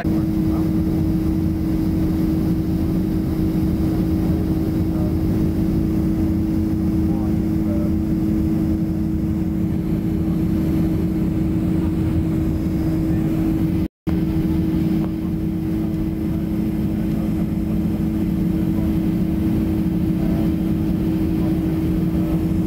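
Steady jet airliner cabin noise in flight: engine and air rumble with a constant hum heard through the cabin. The sound cuts out for an instant about fourteen seconds in.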